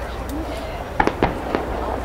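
Distant aerial fireworks bursting: a quick run of four sharp bangs about halfway through, within about half a second.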